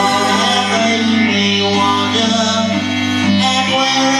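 Live band music: keyboard chords over a low held note that stops just before the end, with a woman singing.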